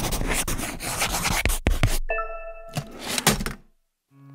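Logo intro sound effects: dense scratchy, rustling noise, then a brief bright chord of steady tones about two seconds in, followed by two short noisy swishes that cut off suddenly just before the end.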